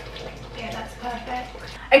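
Quiet, indistinct talking over the faint hiss of a pot of water on the boil.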